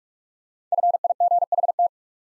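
Computer-generated Morse code tone at 45 words per minute, keying the word FIGHT as five quick letter groups of dots and dashes on one steady mid-pitched note. It starts about three-quarters of a second in and stops just before the two-second mark.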